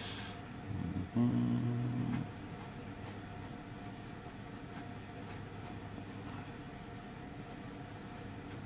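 Graphite pencil scratching and shading on drawing paper, with faint ticks of the pencil strokes. A brief, steady low hum sounds about a second in and stops a second later.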